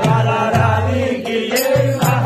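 Devotional kirtan: a group of voices chanting over the deep strokes of a mridanga drum.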